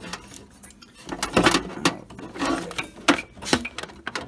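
Irregular clicks, knocks and scrapes of a graphics card being worked loose from its motherboard slot and plastic retention clip inside a steel PC case. They start about a second in and go on until near the end.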